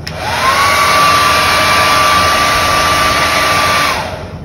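Compact foldable travel hair dryer switched on: a steady blowing rush with a motor whine that rises in pitch over the first half second as it spins up, then holds steady until the dryer is switched off just before the end.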